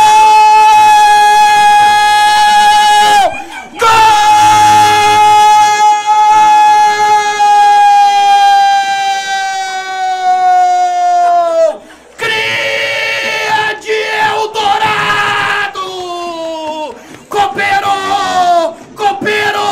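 Radio-style football commentator's prolonged goal shout, the long drawn-out "gooool" called for a goal. The note is held for about three seconds, then after a breath for about eight more seconds, sagging in pitch as his breath runs out, followed by more excited shouting.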